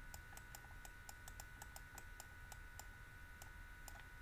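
Faint, irregular clicks of a stylus tapping on a tablet screen while writing by hand, roughly five a second, over a faint steady electrical whine.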